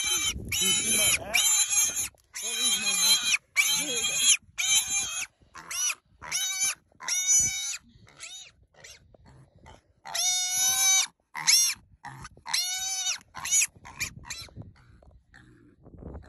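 A baby wild hog squealing over and over in shrill, high-pitched cries, each lasting up to about a second. The squeals grow fainter and further apart near the end.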